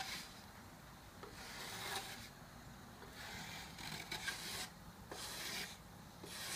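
Small hand plane shaving the wooden leading edge of a model aircraft wing: a run of light, faint strokes, each about a second long, with brief pauses between.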